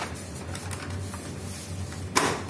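Light plastic clicks and rattles from a Kyocera laser printer's cover panel being handled and fitted against the open printer body, over a steady low hum.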